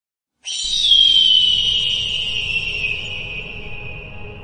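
Logo intro sound effect: a high, whistle-like tone starts about half a second in, loudest near one second, then glides slowly down in pitch and fades, over a faint low rumble.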